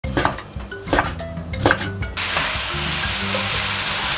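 A short musical intro with three struck notes. Then, from about two seconds in, potato and fish-cake stir-fry sizzling steadily in a hot frying pan, with soft music underneath.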